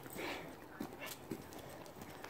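Faint sounds of a dog on a lead, with a few light steps on the road surface.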